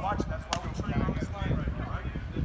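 Indistinct men's voices calling out on a football practice field, with one sharp clap or smack about half a second in.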